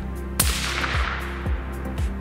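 A single rifle shot about half a second in, with a tail that fades over about a second, over background music with a steady beat.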